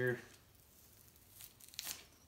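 Red fox hide being pulled and peeled down off the carcass: a few short tearing rasps near the end, the last one the loudest.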